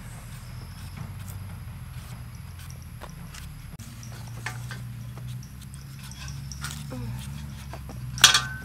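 Scattered faint clicks and scrapes of small knives working apples, peeling them and handling the apples on a skewer, over a steady low hum.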